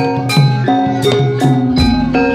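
Javanese gamelan music: bronze metallophones play a melody of struck, ringing notes, about three a second, with drum strokes. A deep gong-like bass note enters near the end.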